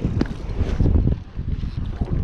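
Wind buffeting the microphone in a low rumble, with a few light knocks from the phone being handled and swung around.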